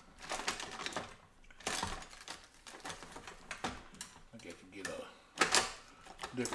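Paintbrushes clattering and clicking as they are sorted through in search of a fan brush, in irregular bursts with the loudest clatter near the end.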